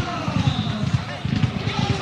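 Football stadium crowd noise: fans' voices and chanting over a dense run of low thumps.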